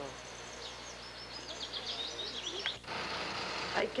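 A small songbird chirping a quick run of short high notes over steady outdoor background hiss. About three seconds in, the chirping stops and the background changes abruptly to a different hiss.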